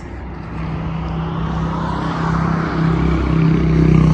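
Car engine running, heard from inside the cabin: a steady low hum over a rumble, growing gradually louder.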